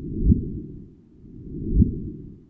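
The first detected gravitational wave, from LIGO's 2015 event GW150914, turned into sound: a low rumble that swells into a short upward-sweeping chirp, twice, about a second and a half apart. The chirp is the sign of two black holes spiralling together and merging.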